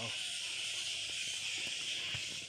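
Steady, high-pitched hiss-like chorus of forest creatures from the tree canopy, an even drone with no breaks.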